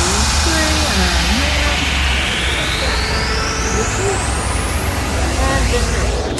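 Background chatter of several people talking, over a steady low hum, while a thin high sweep rises over about four seconds, a build-up effect in the electronic music track laid over the scene.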